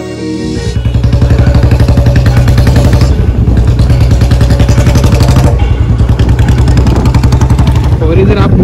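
Motorcycle engine running while the bike rides along, a fast even pulsing that grows louder about a second in.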